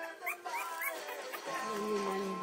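Bulldog-mix puppy giving three short, rising, high-pitched squeaks in the first second, over background music.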